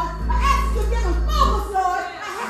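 A woman's voice through the church sound system over music, with a steady low accompanying note that drops out near the end.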